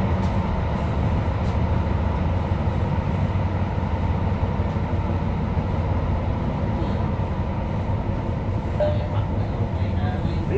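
Tyne and Wear Metrocar running along the track, heard from inside the passenger saloon: a steady rumble of wheels on rail with a faint steady whine above it.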